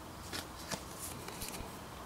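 Faint handling of a plastic authenticity card and a small paper card between the fingers: a few light clicks and rustles.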